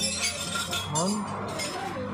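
A few sharp metallic clinks of a hand wrench against the steel front suspension and hub parts of a van.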